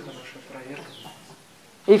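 Faint bird calls, with a short high call falling in pitch about half a second in.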